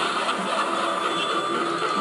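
Motorized Halloween animatronic running as its figure moves: a steady mechanical whirring with a thin high tone running through it.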